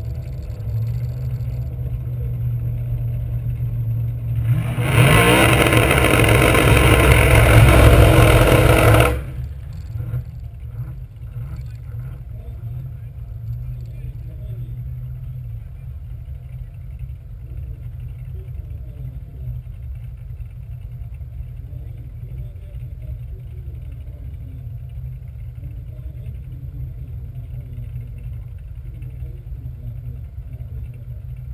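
Corvette LS1 V8 idling with a low steady rumble. About five seconds in comes a loud burst of engine revving and tyre-spinning noise that lasts about four seconds and cuts off sharply: a drag-racing burnout by the car ahead, whose tyre smoke drifts back over the track.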